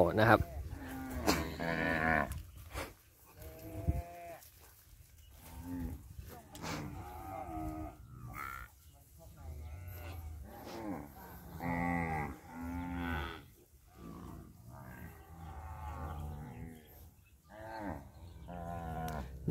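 A herd of cattle mooing: a dozen or so long moos from several animals, one after another and some overlapping.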